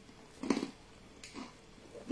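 A person chewing a biscuit, with two short mouth sounds: a louder one about half a second in and a fainter one about a second later.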